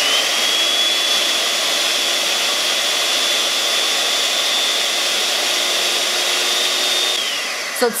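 Electric hand mixer running fast with a cardboard paper towel roll on its whisk attachment, winding yarn: a steady motor hum with a high whine. Near the end the whine drops in pitch and fades as the mixer winds down.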